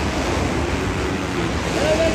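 Steady wash of noise from racing dirt bike engines and the arena crowd blended together, with faint engine tones shifting in pitch.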